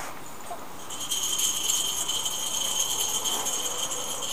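A high, rapid rattling trill starts about a second in and holds steady.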